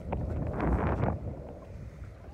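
Wind buffeting the microphone, heaviest in the first second or so, then easing off.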